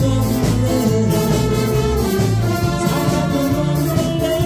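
A big band playing a Korean trot song: a section of alto, tenor and soprano saxophones carrying the melody over a rhythm section with a steady beat.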